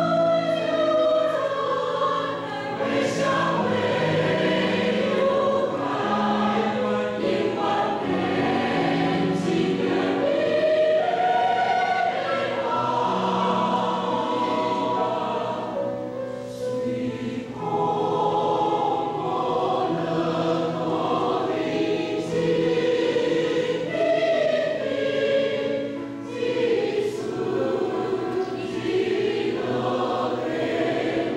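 Mixed choir of men's and women's voices singing in parts, with brief phrase breaks about 17 and 26 seconds in.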